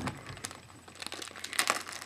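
Clear plastic zip-top (Ziploc) bag crinkling as it is handled, with the loudest crinkling about one and a half seconds in.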